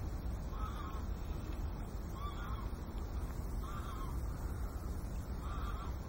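A bird calling repeatedly: four short calls about a second and a half apart, over a steady low rumble.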